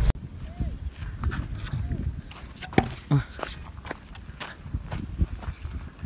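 Footsteps on sandy, stony ground, with scattered irregular knocks and faint distant voices.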